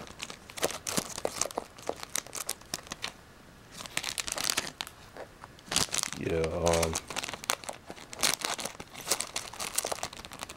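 Plastic sleeves on booster packs crinkling and clicking as the packs are flipped through by hand in a cardboard box, with a short lull about three seconds in.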